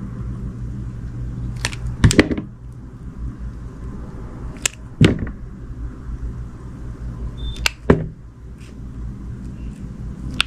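Utility knife blade slicing through a slab of soft glycerin soap, crisp cuts in close pairs about every three seconds, over a low steady hum.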